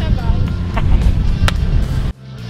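Heavy low rumble of wind on the microphone over background music, with the tail of a man's cheering shout right at the start.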